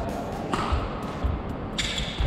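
Badminton court sounds during a multi-feed drill: a few dull thuds of a player's footwork on the court floor, about three in two seconds, over steady hall noise.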